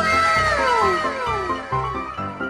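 Cartoon sound effect: several overlapping whistling tones sliding downward in pitch together over about a second and a half. Piano music picks up again near the end.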